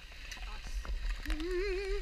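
A person's drawn-out, wavering vocal call, starting a little past halfway and held to the end, over a low steady rumble.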